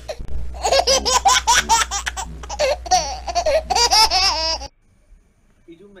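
High-pitched laughter in rapid repeated 'ha' bursts for about four seconds over a steady low hum, both cutting off abruptly near the end.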